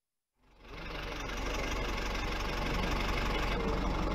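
A vehicle engine running steadily, fading in from silence about half a second in and holding at an even level.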